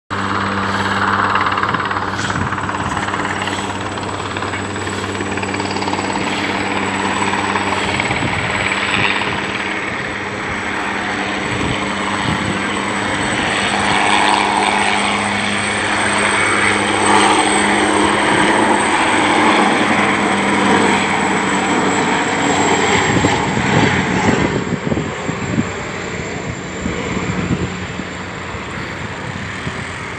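Helicopter hovering low over the water: a steady rotor drone with a constant high turbine whine. The sound grows more uneven in the last few seconds.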